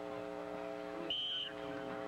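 A referee's whistle blows one short, high blast a little past a second in, blowing the play dead after the tackle. Under it runs a steady hum in the old broadcast audio.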